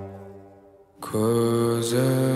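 Live band music: a sustained chord fades away over the first second to a brief near-silence, then a new held chord comes in sharply about a second in.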